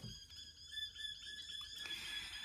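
Faint birds chirping: short high notes over a thin, steady high-pitched background.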